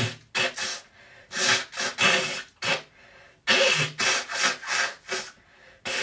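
A woman blowing her nose in a series of short, forceful blows, about eight in two runs with a brief pause about three seconds in. Her congested nose is finally clearing, after it had been draining down the back of her throat.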